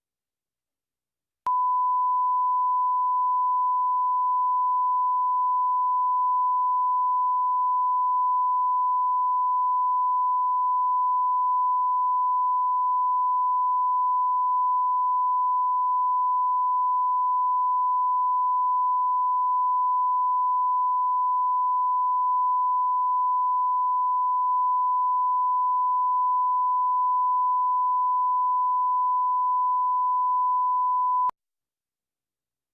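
A steady 1 kHz line-up tone, the reference tone recorded with colour bars at the head of a broadcast master tape, starting abruptly about a second and a half in out of total silence and holding at one even pitch and level.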